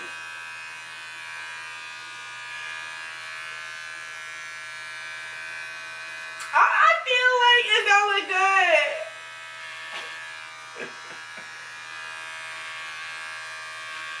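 Electric hair clippers running with a steady buzz as they are worked over the hair. A voice breaks in loudly for about two seconds midway.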